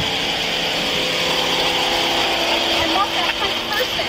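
Idling police vehicles: a steady engine hum with a high hiss, and faint voices in the background near the end.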